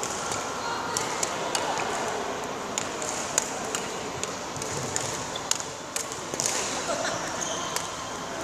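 Badminton play in a reverberant sports hall: sharp clicks of rackets striking shuttlecocks and footfalls on the court floor, coming at irregular moments about once a second, with a few short shoe squeaks.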